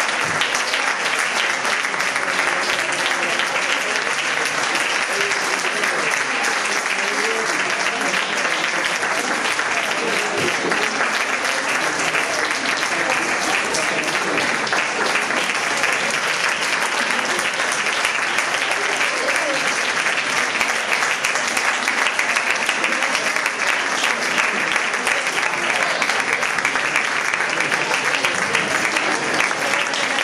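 Audience applauding steadily and without a break, welcoming the orchestra's musicians onto the stage at the start of a concert.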